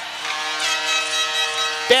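Hockey arena goal horn sounding one long steady blast, the signal of a home-team goal.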